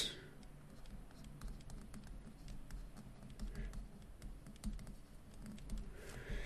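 Faint, irregular clicks and taps of a stylus tip on a tablet screen as words are handwritten.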